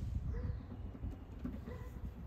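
Low outdoor rumble with faint rustling handling noise close to the microphone, and a couple of faint short chirps.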